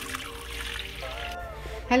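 Hot boiled herbal liquid poured from a pot through a fine mesh strainer into a glass bowl: a trickling, splashing pour that stops after about a second and a half.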